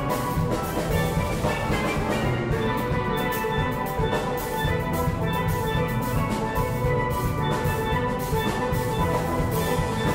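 A steel band playing a calypso: steelpans of several ranges sounding melody and chords together over a drum kit keeping the beat, at a steady level throughout.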